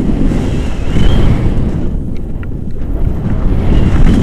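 Wind rushing and buffeting on the microphone of a camera on a paraglider in flight, loud and low, swelling about a second in and again near the end. A faint high whistle comes and goes above it.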